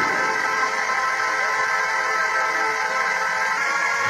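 A held electronic synthesizer chord: a steady drone of several sustained notes with no beat, changing slightly near the end.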